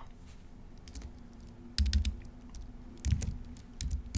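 Computer keyboard being typed on: scattered key clicks, with a couple of low thumps about two and three seconds in.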